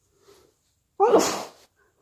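One loud, sudden sneeze about a second in, from a person with a cold, with faint breaths before and after it.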